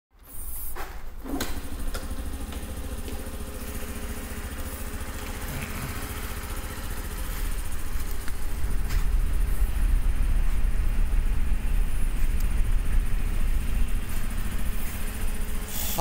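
Honda Super Cub 50 DX's air-cooled single-cylinder 49cc SOHC engine idling steadily, getting louder about halfway through.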